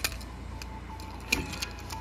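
A few small clicks and taps from a die-cast toy car being turned over in the fingers, one near the start and two more past the middle, over a low steady hum.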